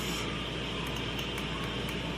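Steady background noise, a low hum under an even hiss, with a few faint light ticks.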